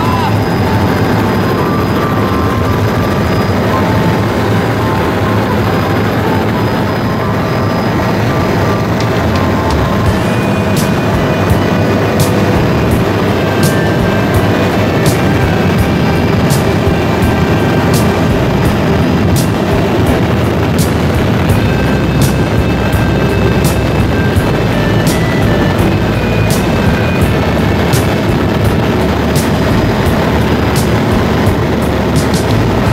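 Steady helicopter cabin noise from the engine and rotor, with music playing over it. From about ten seconds in, sharp ticks come at uneven intervals.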